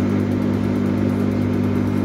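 Front-loading clothes dryer's motor running with a steady hum as the drum spins fast, the motor turning now that its capacitor has been fixed.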